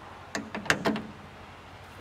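A quick run of four or five sharp clicks and knocks within the first second, the third the loudest, from hardware being handled.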